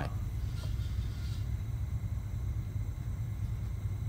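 A steady low background rumble, with no distinct clicks or knocks above it.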